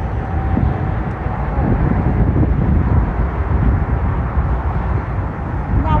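Steady low outdoor rumble with a faint, even hum running through it and no distinct events.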